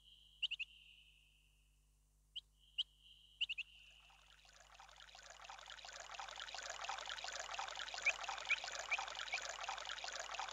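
Small bird chirping a few short rising notes with a held whistle. From about four seconds in, the babble of a rocky forest stream fades in and keeps running, with four more quick chirps over it near the end.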